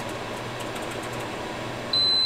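Steady hum and fan noise from a power inverter and the appliances it runs off the battery under test. Right at the end a loud, high, continuous beep starts: the alarm as the nearly empty battery reaches its low-voltage cutoff.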